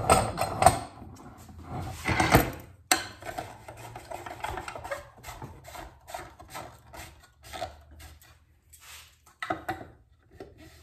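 Metal clinks and knocks of Knipex Cobra pump pliers and a pipe fitting being handled and gripped in a bench vise. The loudest knocks come in the first three seconds, followed by lighter scattered clicks.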